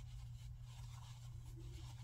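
Faint rustling and scraping of a metal crochet hook pulling loops through plush chenille blanket yarn, over a low steady hum.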